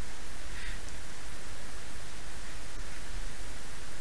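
Steady hiss of background noise, even throughout, with no other distinct sound.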